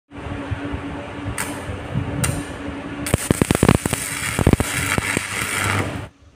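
Electric arc crackling from a homemade welder built from a ceiling-fan stator coil on mains power, as its lead is struck against steel. Two short sparks come in the first couple of seconds, then a sustained crackling arc with a rapid run of snaps from about three seconds in, over a steady hum.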